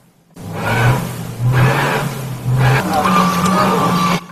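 A car stuck in snow: its engine revs steadily while the drive wheels spin without grip. The revs step up twice.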